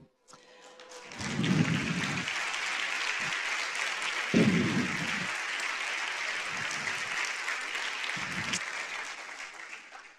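Auditorium audience applauding, swelling about a second in, holding steady, then tapering off near the end.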